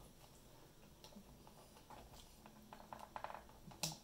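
Faint handling noises of a USB cable being plugged into a microcontroller development board in a plastic case: a few small clicks in the second half, then one sharper click shortly before the end.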